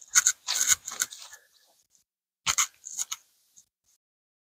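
Footsteps crunching through grass and dry leaves: a quick run of steps in the first second and a half, then a few more a little past the middle.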